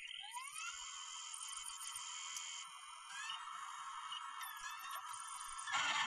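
A faint electronic whine that glides up in pitch at the start, then holds as several steady high tones, with a few small wavering glides around the middle.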